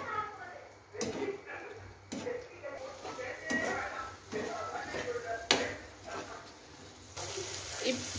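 Perforated steel spatula stirring egg masala in a nonstick frying pan, knocking against the pan a few times, with faint voices in the background. Near the end a steady frying sizzle sets in.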